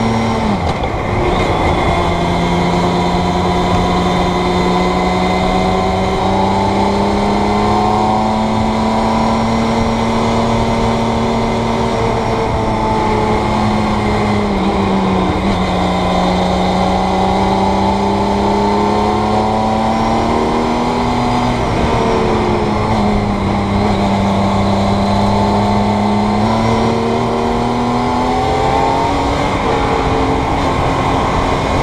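Campagna T-Rex three-wheeler's motorcycle-derived six-cylinder engine pulling steadily on the road, heard from the cockpit. Its pitch climbs slowly through each gear and drops suddenly at upshifts about a second in, around the middle and about two-thirds of the way through, then rises again near the end.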